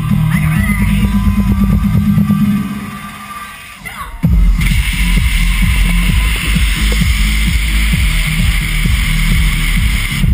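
Electronic dance music played loud over a festival sound system: the beat thins out and quietens about three seconds in, then drops back with heavy bass a little after four seconds. Just after the drop, stage CO2 cannons add a loud steady hiss over the music that cuts off near the end.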